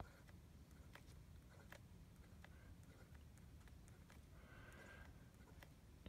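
Near silence, with faint, irregular ticks and a brief soft scratch of a fountain pen nib dabbing dots onto paper.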